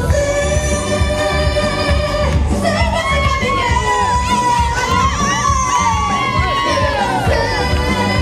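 Dance music with a steady beat over loudspeakers, with singing and one long held note in the first couple of seconds. From about three seconds in, a crowd cheers and whoops over the music.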